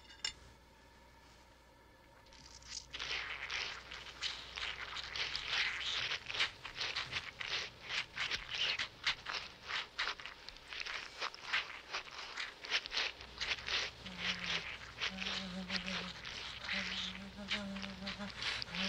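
Film sound effect for a small roast bird oozing dark juice on a plate: a dense, irregular wet crackling of rapid clicks, starting about three seconds in and running on. From about fourteen seconds in, short spells of a woman's low moaning join it.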